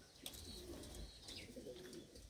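Domestic pigeons cooing faintly.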